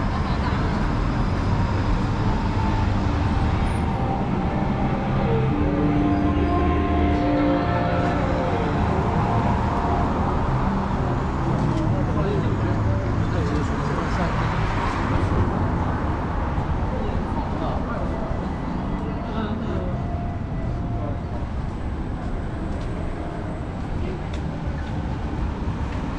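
Busy city street traffic: a steady low rumble of cars and other vehicles on the road close by. A few steady engine tones come in early on, and a vehicle swells past near the middle.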